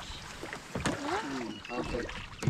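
A single knock on the hull of an outrigger canoe as someone steps about inside it, with short gliding vocal exclamations around it.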